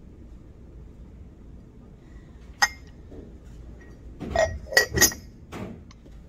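A ceramic lid clinking against a ceramic mug as it is handled and lifted off. One sharp ringing clink comes first, then a quick run of several clinks about a second and a half later.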